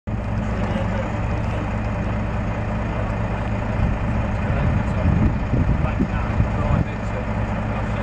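Heavy diesel lorry engine idling steadily, growing louder and rougher from about four and a half seconds in and settling back to its steady idle about two seconds later.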